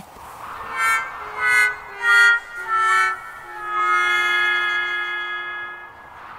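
A short descending 'failure' music sting: four short notes stepping down, then a long held low note, the comic sad cue for an attempt that has not worked.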